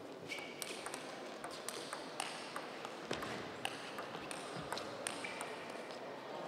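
Table tennis rally: the ball clicks off bats and table in a quick, even run, about two to three strikes a second, until the point ends shortly before the end.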